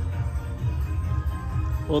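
Parade music playing from a television speaker, a steady low bass under faint held tones.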